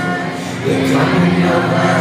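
Live pop concert music heard from within the audience: voices singing held notes over the band, loud and reverberant.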